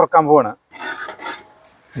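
A brief spoken sound, then three short scraping rasps about a second in.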